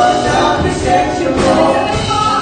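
Live worship band playing a Tagalog praise song, with the singers' voices carried over guitars, keyboard and drums.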